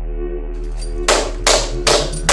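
A low droning music bed, then from about halfway three heavy bangs on a door, about half a second apart: someone pounding on a flat's door to be let in.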